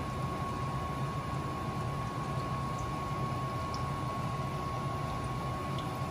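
Dried salted fish (tuyo) frying in hot oil in a pan, a steady sizzle, with a thin steady tone running underneath.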